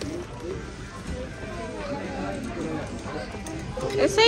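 Shop ambience: background music playing over the indistinct murmur of voices, steady, with no single sound standing out.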